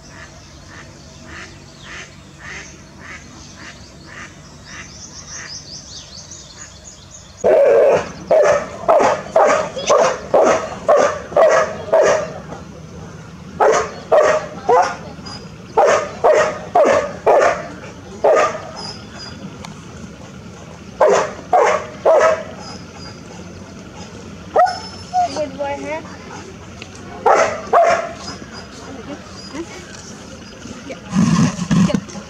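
An animal calling over and over: fainter evenly spaced calls at first, then about seven seconds in, loud bouts of several sharp calls, about two to three a second, with short pauses between bouts.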